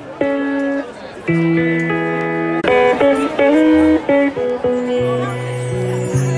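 Live band playing a slow instrumental passage: electric guitar sounding held notes and chords, with a bass guitar coming in about five seconds in.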